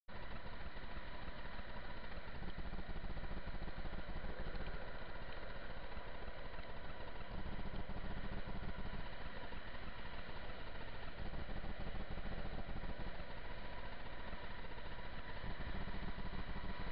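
Steady wind buffeting the microphone, with the rumble of longboard wheels rolling on coarse asphalt at downhill speed.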